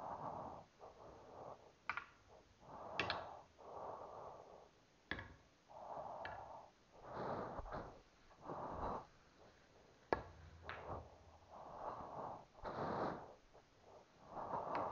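A person breathing heavily close to the microphone, a breath about every second, with a few sharp clacks of a pool cue and billiard balls striking, the loudest about ten seconds in.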